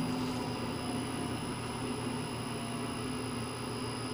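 Rousselet Robatel DRC 50 vertical-axis decanter centrifuge, belt-driven by an electric motor on a variable-frequency drive, running at about half speed as it slows on the drive's deceleration ramp: a steady machine hum with a faint high whine over it.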